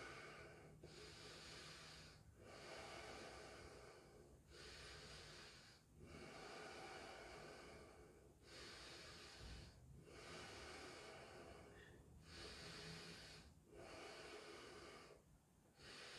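Faint, slow breathing: noisy inhales and exhales alternate, each lasting about one and a half to two seconds, with short pauses between.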